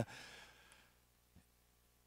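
A man's breath exhaled into a handheld microphone, a faint breathy rush without voice that fades out within about half a second; then near silence with one tiny click.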